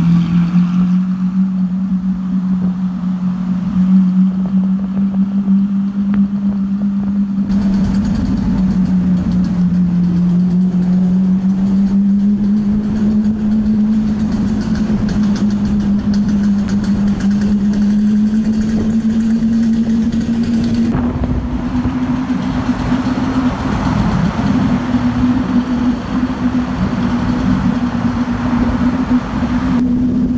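Lamborghini engine cruising at low speed in city traffic, a steady drone that rises slowly in pitch.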